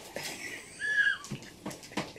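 A sound-making toy bear going off: a short high note that slides downward about a second in, with a few faint clicks.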